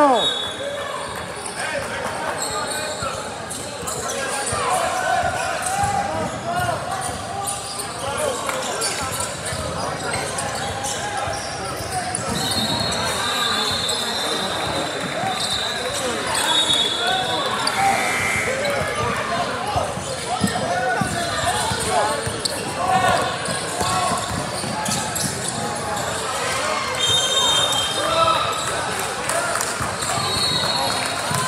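A basketball bouncing on a hardwood gym court during play, under steady chatter from players and spectators, with a few brief high squeaks.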